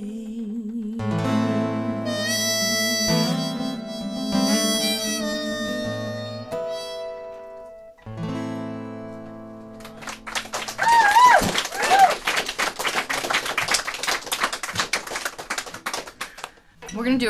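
A song's closing bars on acoustic guitar with harmonica, the last chord ringing out until about ten seconds in. Then a small audience applauds, with a few whoops.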